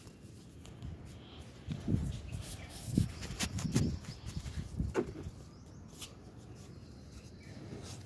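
A run of irregular low thumps and knocks with a few sharp clicks, between about two and five seconds in: handling noise from a phone carried across a terrace while walking.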